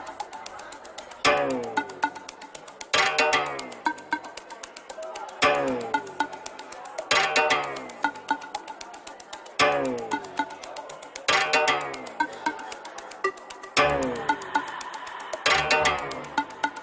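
Melodic techno playing in a DJ mix: a steady electronic beat with a loud pitched synth note that falls in pitch. The note comes in pairs about a second and a half apart, the pattern repeating every few seconds.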